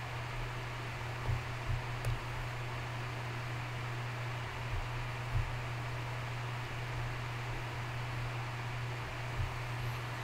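Steady low hum and even hiss of background room noise, with a few faint clicks.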